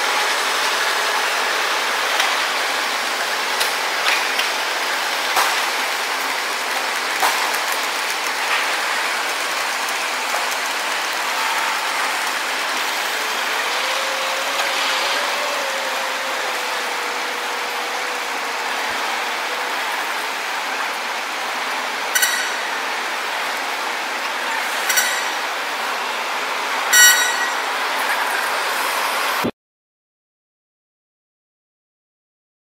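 Tow truck hauling an airliner on a tow bar: a steady mechanical rattle with scattered clicks, a faint wavering whine in the middle, and three sharp metallic clanks near the end. It cuts off suddenly just before the end.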